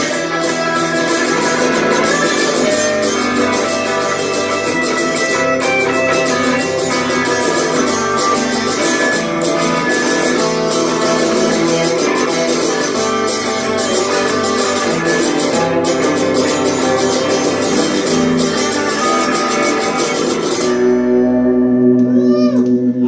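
Live acoustic and electric guitars playing an instrumental passage together, full strummed chords throughout. About a second before the end the strumming stops, leaving a last chord ringing.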